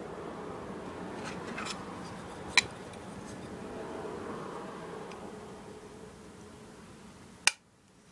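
Light handling clicks of a V-Tech grip panel being held and shifted against an airsoft 1911 frame, over a steady faint hiss. There is a sharper click about two and a half seconds in and another near the end.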